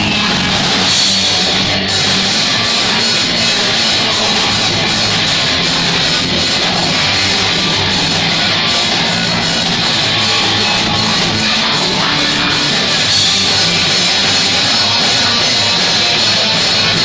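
A rock band playing live: electric guitars over a drum kit, keeping a steady beat, loud and continuous.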